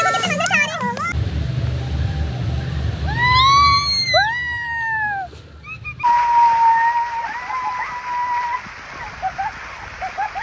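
Water splashing and churning as riders plunge off water slides into a splash pool, with shrieking, wavering voices over the splashing.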